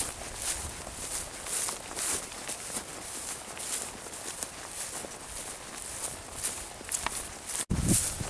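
Footsteps on grass, an even swishing tread about two steps a second. The sound drops out for a moment near the end.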